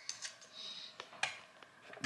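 Faint room tone with a few light, sharp clicks, about four in two seconds, and a brief soft rustle.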